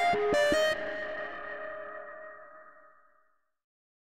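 Closing music: a few quick plucked notes end about half a second in, and the last chord rings out and fades away over the next two to three seconds.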